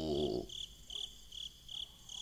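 Cricket chirping sound effect, a faint, evenly repeating high chirp about two to three times a second. In the first half second a low, falling hum of a voice trails off.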